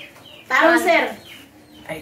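A chicken calling once, a short pitched call lasting about half a second.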